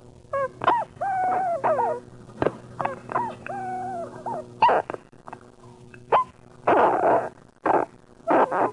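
Experimental electronic music made of short pitched vocal-like sounds that slide down in pitch and sharp clicks over a steady low hum, with harsh noisy bursts near the end.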